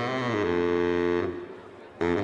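Baritone saxophone playing a low held note that bends into pitch at the start and stops a little past halfway, leaving a quieter gap.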